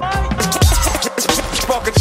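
Hip hop music with turntable scratching over a heavy kick drum, the DJ mixing from one track into the next.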